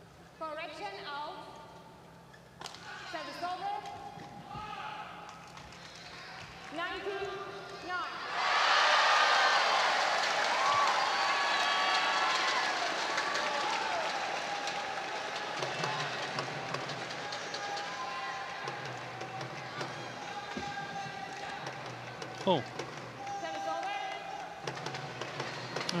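Arena crowd at a badminton match: faint voices at first, then about eight seconds in a sudden loud swell of crowd cheering and chatter that slowly dies away. A few sharp knocks stand out near the end.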